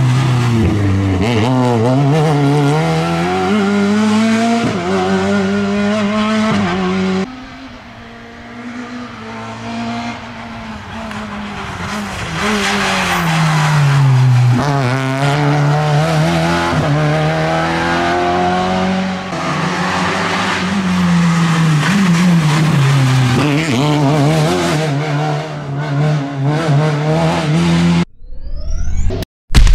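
Renault Clio II rally car's engine revving hard at full throttle, its pitch climbing and falling back with each gear change. About seven seconds in the sound cuts to a second pass, which starts quieter and grows loud as the car comes by.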